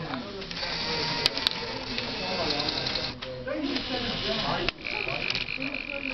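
Small electric motors of a Fischertechnik marble-sorting machine buzzing as it sorts a marble, with a few sharp clicks. A steady high tone comes in about five seconds in.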